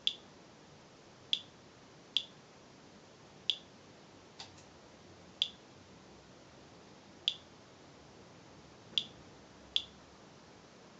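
Inspector Alert Geiger counter chirping once for each radiation count: about nine short, high chirps at irregular, random intervals. The rate is that of ordinary background radiation, with the display near 0.07 µSv/h.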